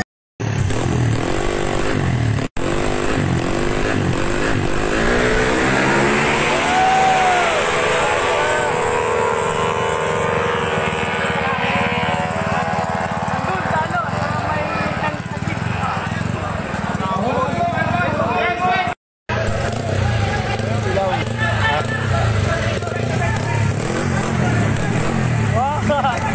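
Crowd of spectators chattering and shouting over racing Yamaha Mio scooter engines, with pitch glides from engines and voices. The sound drops out briefly twice.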